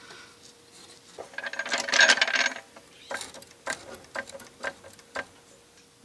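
Socket ratchet clicking while the exhaust pipe flange nuts are run down on the manifold studs: a quick run of clicks about a second and a half in, then a handful of separate clicks.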